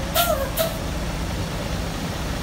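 Mercedes-Benz coach's diesel engine running with a low steady rumble as the bus moves off, with two short air hisses about half a second apart near the start.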